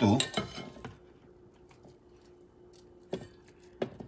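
Light kitchen clatter: a sharp clack about a quarter second in and two short knocks near the end, as a plastic bowl is moved on a glass-top stove and a hand works in a stainless steel mixing bowl. A faint steady hum runs beneath.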